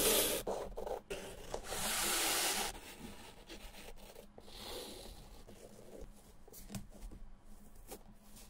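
Flat shoelaces being pulled through a sneaker's eyelets, making rubbing swishes: a short one at the start and a longer one about two seconds in. Then come a softer swish and light rustles and ticks as the lace is handled.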